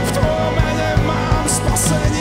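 Live rock band playing a worship song: strummed acoustic guitar, electric guitar and bass over a steady drum beat, with a sung vocal line. Two cymbal crashes come in the second half.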